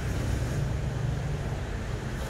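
Steady low rumble of outdoor street background noise, with no distinct events.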